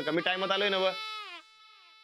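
A man's voice speaking, the last sound drawn out with its pitch falling and fading away over about half a second, a little after a second in.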